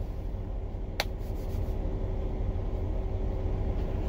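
Steady low rumble and faint hum of a parked semi truck's running machinery, heard from inside the sleeper cab, with a single sharp click about a second in.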